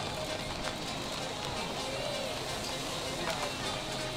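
Steady outdoor stadium background at a track meet: a low hum of crowd and ambient noise with faint distant voices.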